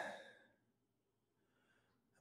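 Near silence: a pause in the talk, with the tail of a spoken word fading out in the first half-second.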